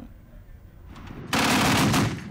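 Heavy machine gun firing a rapid burst of automatic fire, starting abruptly just over a second in and continuing for most of a second.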